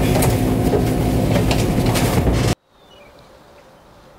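Steady low rumble and hum of a boat under way, heard inside the wheelhouse, with irregular rattling clicks. It cuts off abruptly about two and a half seconds in, leaving a much quieter background.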